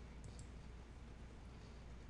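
Faint computer mouse clicks, a few in quick succession about a quarter-second in, over a low steady electrical hum.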